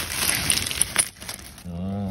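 A plastic bag crinkling as a bagful of metal air-hose quick couplers and anti-twist swivel fittings is tipped out onto concrete, the fittings clinking against each other in a few sharp clinks. It stops about a second in.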